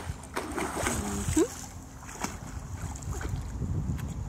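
Pool water splashing and sloshing as a child swims underwater through it, with a few short clicks.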